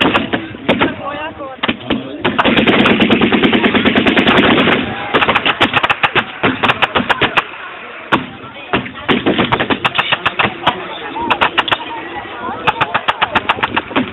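Battle-reenactment gunfire firing blanks: a dense burst of machine-gun fire lasting about two and a half seconds starting a couple of seconds in, then scattered and rapid rifle shots, and another rapid run of shots near the end.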